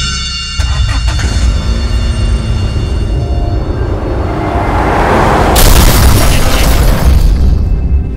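Cinematic title music: a deep boom hits about half a second in, then a rising noisy swell builds to a loud crash-like burst near the end and falls away.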